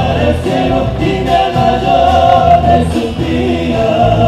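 Live folk band playing: several voices singing together over strummed acoustic guitars and drums, through a loud stage sound system.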